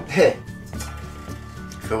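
Soft background music with light clinks of a metal wok being picked up and handled.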